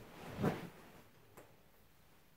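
A short soft thump and rustle about half a second in as a person shifts their weight onto a fabric sofa, then one faint click and quiet room tone.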